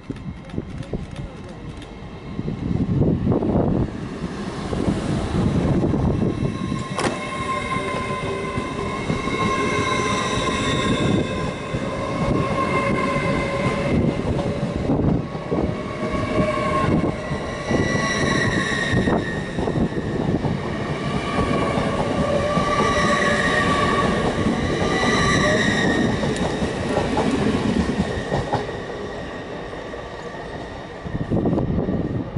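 LNER Azuma (Hitachi Class 800-series) train running slowly past along the platform. A rumble of wheels on rail sits under a whine from its traction equipment that holds steady tones and steps between pitches. The sound fades near the end as the train moves away.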